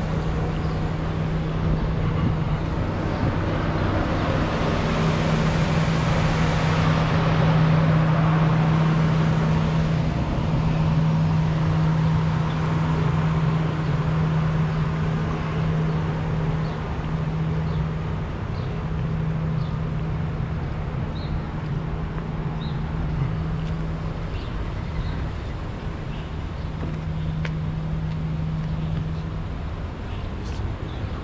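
City street traffic noise: a rush that swells to its loudest about eight seconds in and then eases, over a steady low hum that runs almost throughout.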